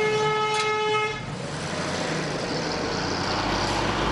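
A vehicle horn sounds once in a steady held blast of about a second and a half, a warning at a near-collision between a pickup and a semi-truck. It is followed by the loud running noise of the Scania semi-truck's engine and tyres as it passes close by.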